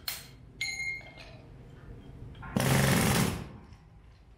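Jackhammer breaking up reinforced concrete: one burst of hammering, a little under a second long, about two and a half seconds in. A short high tone sounds about half a second in.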